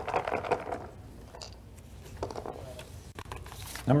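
Small hard pieces rattling and clicking together, densest in the first second, then a few scattered clicks: numbered pills being shaken and handled in the post-position draw's pill shaker bottle.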